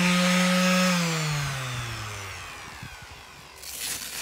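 Electric sheet sander switched off: its steady motor hum drops in pitch and winds down over about a second and a half, fading away. A short rustling scrape comes near the end.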